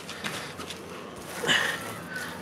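A hand plunging into a tub of thick, frothy liquid mixture to stir it, a short wet splash about one and a half seconds in.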